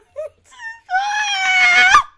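A woman's voice makes two short high sounds, then holds a long, loud, high-pitched cry for about a second that rises at the very end.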